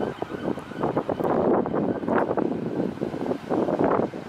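Wind buffeting the camera's microphone in gusts, an uneven rumbling rush.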